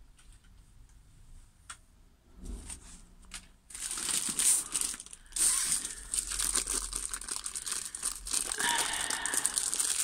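Clear plastic wrapping around a rolled diamond-painting canvas being handled and pulled at. After a few quiet seconds of light handling, it crinkles and rustles continuously from about four seconds in.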